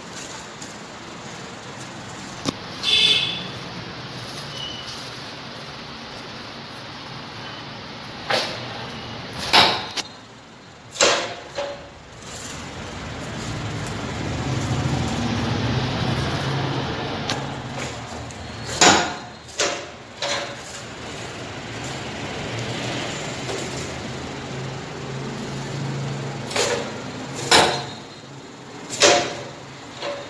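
Manual leg-press paper plate making machine being worked: repeated sharp metal clunks of the press and die, often two close together, over a steady background rumble.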